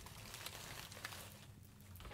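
Faint rustling and a few light clicks of flower stems being handled and sorted, barely above room tone.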